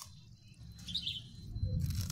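A bird chirping briefly about a second in, over a faint steady high tone, with a low rumble and a rustle building near the end.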